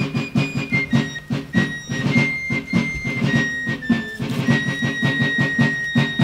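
Fife and drum music: a high, piping fife melody with long held notes over steady snare drumming.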